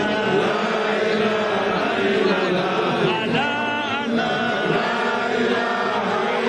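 A crowd of many voices chanting a religious chant together, the voices overlapping continuously without pause.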